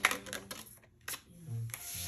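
Tarot cards being handled and laid down on a wooden table: a cluster of sharp clicks and taps at the start and another single tap about a second in.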